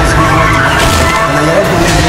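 Loud, wavering screech of a car's tyres skidding under hard braking, over dramatic horror-trailer music.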